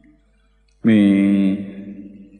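A monk's voice intoning one long chanted note on a single pitch, coming in a little under a second in after a brief pause and then fading away.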